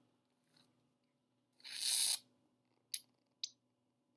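Crafting handling noise from a squeeze bottle of white school glue and a painted paper bag: a short rustle that swells and fades about halfway through, then two light clicks a half second apart.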